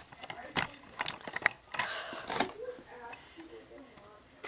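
A handheld camera being picked up and moved close to the microphone: scattered clicks, knocks and rustles of handling, with faint mumbling.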